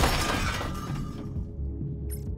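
A sudden loud crash right at the start, dying away over about a second, over background music.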